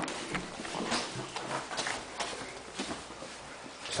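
Footsteps of a person walking through a house with a handheld camera, about two steps a second, mixed with handling noise.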